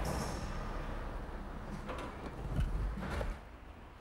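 A Rover 416SLi 16-valve saloon with its engine running, being driven forward on a roller brake tester. A low rumble swells about two and a half seconds in, then the sound drops away sharply near the end.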